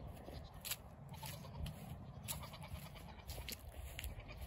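Faint footsteps on grass: a few soft, irregular crunches over a low rumble of wind on the microphone.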